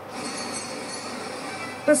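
Steady rumbling background noise played through a television's speaker, with speech starting near the end.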